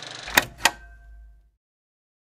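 Two sharp clicks about a quarter second apart from a tape recorder's buttons being pressed, then a faint low hum that cuts off about a second later as the tape stops.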